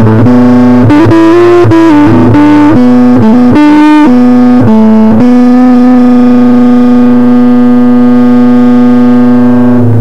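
Electric guitar played through the BigZedMuff, a Big Muff-style fuzz pedal, giving a thick distorted tone. It plays a short lead line of several notes, a few of them bent, then holds one long sustained note for about the last four seconds before it cuts off.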